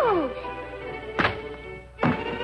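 Orchestral cartoon score: a falling melodic glide settles into soft held notes, and a little over a second in comes a single sharp thunk as a toy-sized rifle is smashed against a rock and broken.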